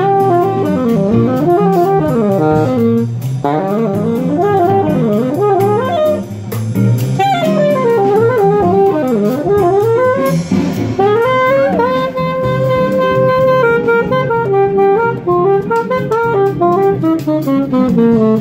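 Live jazz jam music: a lead melody with sliding pitch bends and a long held note about two-thirds of the way through, over a rhythm section.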